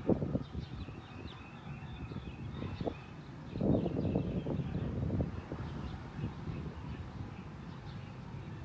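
Small birds chirping in the background over a low rumbling outdoor noise that swells briefly right at the start and again for about a second and a half from about three and a half seconds in.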